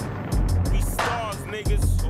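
Hip-hop instrumental beat with deep bass notes and sharp percussion hits.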